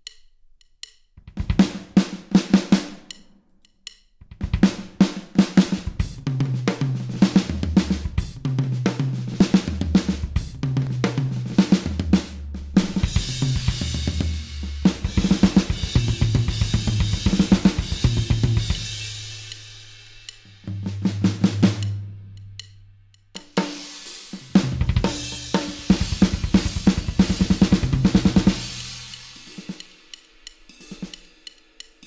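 Addictive Drums 2 virtual drum kit playing a run of short drum fills on kick, snare and cymbals, one fill after another with brief gaps between them. A cymbal wash swells through the middle and again near the end.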